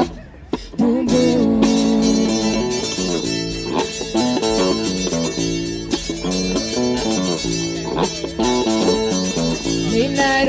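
Acoustic guitar strumming and electric bass guitar playing an instrumental passage of an indie-folk song. The playing drops out briefly at the start and comes back in just under a second in.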